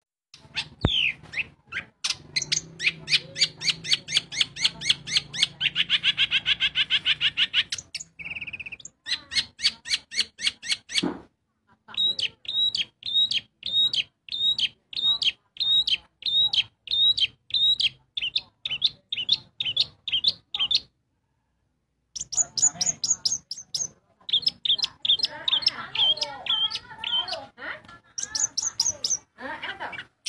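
Caged long-tailed shrike (cendet) singing loudly in rapid trains of sharp, repeated notes, several a second, broken by short pauses and one full stop about two-thirds of the way through, followed by a more varied, warbling passage near the end.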